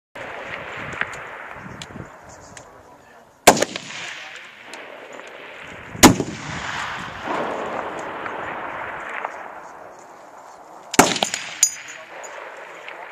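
Three shots from Barrett .50 BMG rifles (an M82A1 and an M99), fired a few seconds apart, each a sharp loud blast followed by a long rolling echo.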